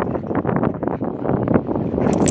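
A dog rolling and wriggling on its back in grass close to the microphone and then scrambling up: a loud, irregular rustling and scuffing, with wind buffeting the microphone.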